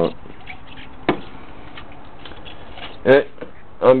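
Container handling on a workbench: one sharp click about a second in and a few faint light ticks, over a steady low hiss.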